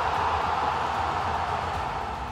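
A steady rushing whoosh of noise from a broadcast transition sound effect, fading a little near the end.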